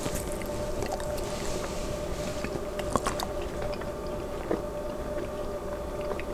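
Close-miked chewing of asparagus, with scattered small wet mouth clicks over a steady low background hum.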